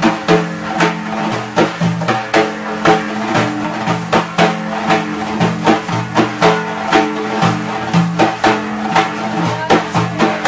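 Hand-played frame drums, among them a large Persian daf, struck together in a steady rhythm of about two to three strokes a second. The deep strokes ring on with a low tone.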